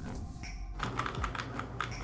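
Typing on a computer keyboard: a quick, irregular run of key clicks, faint.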